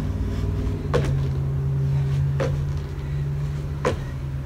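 Feet landing on a wooden deck during small exercise hops: three evenly spaced thuds about a second and a half apart, over a steady low hum.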